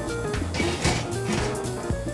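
Background music with a steady bass line. A short noisy scrape rises over it from about half a second to a second in, as an oven rack is slid out.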